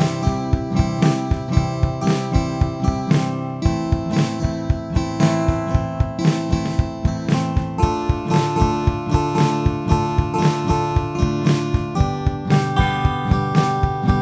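GarageBand's acoustic Smart Guitar on an iPad playing the chord progression C, A minor, D minor, G, changing chord about every four seconds. It plays over a drum-kit track keeping a steady beat.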